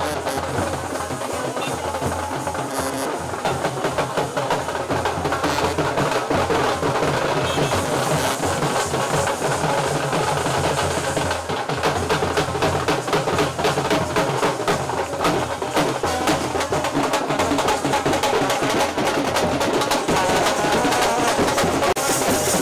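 Wedding procession band playing music with rapid, continuous drumming, getting louder a few seconds in.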